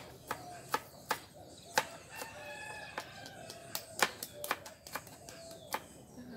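Knife chopping vegetables on a plastic cutting board, with sharp irregular strikes about one or two a second, mixed with eggshells being cracked. A rooster crows once in the background about two seconds in.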